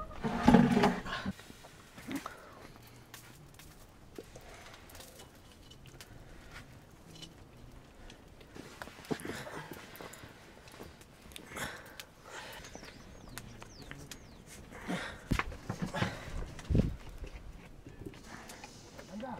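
Scattered small knocks and clatter of cooking things being handled by an open wood fire, with a wok heating on the flames. There is a loud burst about half a second in, and a few short, high, falling chirps near the middle.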